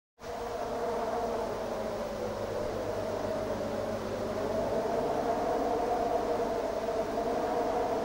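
A steady, slightly wavering buzzing drone of two close tones over a low hum, fading in at the very start: the synthesizer intro of the song.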